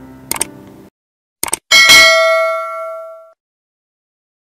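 Subscribe-button animation sound effect: clicks, then a bright bell ding that rings out and fades over about a second and a half. The tail of background music stops just before this, about a second in.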